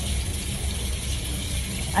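Water running steadily from a tap into a sink, a continuous hiss over a low background hum.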